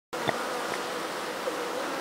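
A colony of honeybees buzzing as a steady, even hum at an open hive, cutting in abruptly just after the start, with one light knock shortly after.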